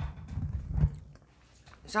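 A few dull low thumps in the first second.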